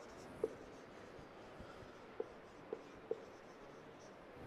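Marker writing on a whiteboard, faint, with a few short squeaky strokes: one about half a second in and three in quick succession in the second half.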